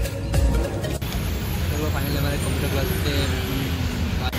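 Background music breaks off about a second in, giving way to steady outdoor street noise: a dense hiss of traffic with faint voices.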